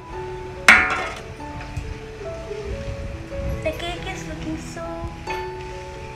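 Background music, with a single sharp metallic clink less than a second in: a steel cake tin knocking against the plate as it is lifted off the turned-out cake.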